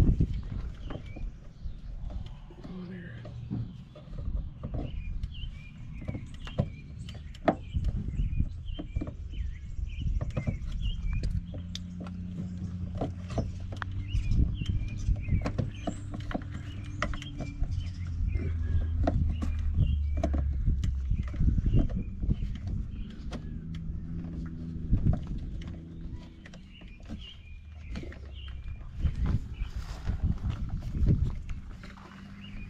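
Scattered clicks and knocks of a heavy power cord and its plug being handled and fitted into a receptacle, over a low rumble with a steady hum that grows louder through the middle.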